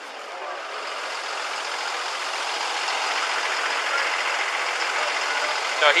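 Ambulance engine running as the ambulance backs up and turns around close by, growing louder over the first few seconds and then holding steady.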